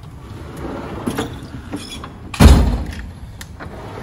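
Steel Snap-on Master Series tool box drawer sliding shut and closing with one heavy thud about halfway through, followed by a couple of light clicks.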